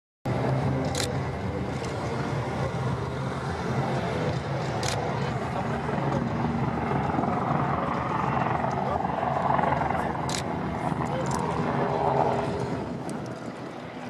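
Eurocopter Tiger attack helicopter in flight, its twin turboshaft engines and rotor a steady drone, with people's voices under it and a few sharp clicks.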